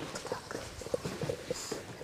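Footsteps on a hard floor: a quick run of light steps as a man walks in.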